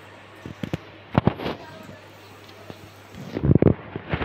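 Irregular knocks and thumps of things being handled and bumped: a few sharp knocks about a second in, then a louder cluster of low thumps near the end.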